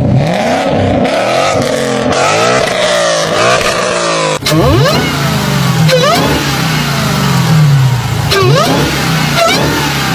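A Ford Mustang's V8 revving repeatedly through its exhaust. After a cut about four seconds in, a supercharged HEMI V8 is blipped several times, its supercharger whine rising in pitch with each rev.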